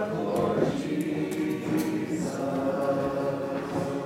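A group of voices singing together in church, holding long notes.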